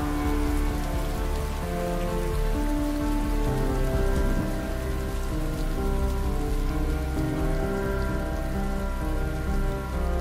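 Steady rain sound effect under slow ambient background music of long held notes that shift every second or so.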